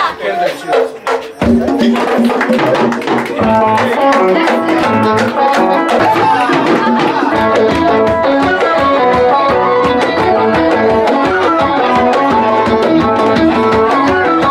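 Live traditional Ethiopian band music: a few sharp hits with short gaps, then at about a second and a half the full band comes in with hand drums keeping a steady rhythm under a stepping melodic line.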